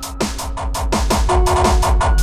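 Hardtekk electronic dance track. A heavy bass kick drum comes in right at the start and pounds about three times a second under held synth notes, with a fast run of drum hits about a second in.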